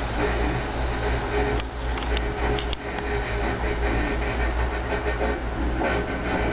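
Steady rumble and hum inside a gondola cable car cabin as it travels along the haul rope, with a few light clicks about two seconds in.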